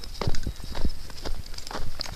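Footsteps in snow: a handful of short, irregularly spaced steps.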